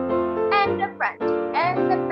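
Piano accompaniment playing a steady sequence of held chords and melody notes. A voice vocalizes over it several times in short, gliding phrases.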